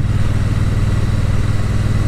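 Triumph Bonneville T100's parallel-twin engine running at a steady, even pitch while the motorcycle cruises along, with road and wind noise.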